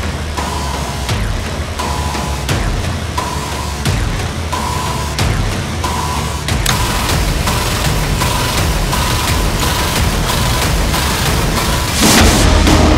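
Suspense game-show music: a heavy low pulse under a repeating high beep like a bomb timer, with the beat getting faster about halfway through. A loud burst begins just at the end.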